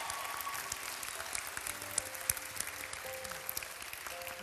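Audience applauding the announced winner: a steady patter of many hands clapping, with music playing quietly beneath.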